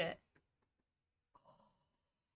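The tail of a woman's spoken word, then near silence broken by a brief, faint sigh about one and a half seconds in.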